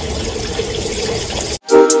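Wood fire in a fire pit crackling steadily, cut off suddenly about one and a half seconds in. Music with a beat then starts and is louder.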